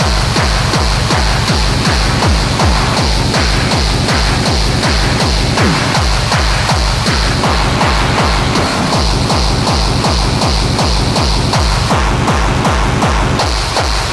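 Hard techno playing at a steady fast tempo: a pounding kick drum on every beat, each kick dropping quickly in pitch, under constant hi-hat and percussion noise.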